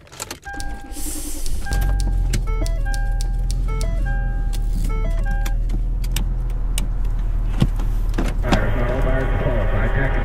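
A car engine starts about two seconds in and runs with a steady low hum, with scattered clicks and short stepped electronic beeps in the first half. Near the end a dense, rapidly shifting burst of car-radio sound comes in as the radio is tuned.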